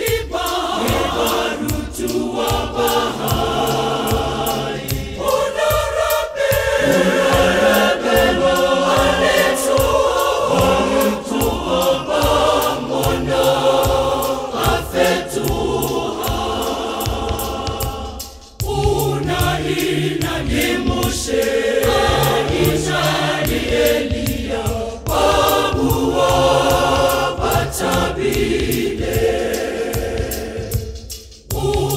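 A large mixed choir of men and women singing a gospel song in harmony over a steady beat, with a short break between phrases a little past the halfway point.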